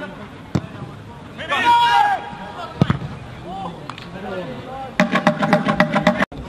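Shouting from players and spectators around a football pitch, loudest a little under two seconds in, with a couple of sharp thuds of the ball being kicked. Near the end comes a quick run of sharp knocks under a voice.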